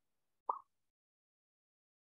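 Near silence broken once, about half a second in, by a single short mouth pop from the narrator.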